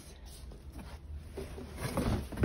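Faint rustling and handling noise as fabric and the contents of a cardboard box are moved about, a little busier near the end, over a low steady rumble.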